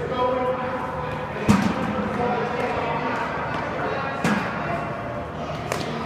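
Three sharp knocks ringing in a large, echoing hall, the loudest about a second and a half in and two fainter ones later, over a steady murmur of background voices.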